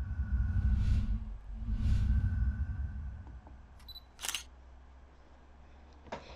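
Outro sound effects: two low swelling whooshes in the first three seconds, then a single sharp click about four seconds in.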